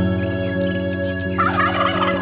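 A tom turkey gobbles once, starting about a second and a half in and lasting about a second. Background music with held notes plays under it.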